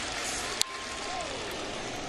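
Ballpark crowd noise with a single sharp crack of a bat on a baseball about half a second in, as the batter fouls off the pitch.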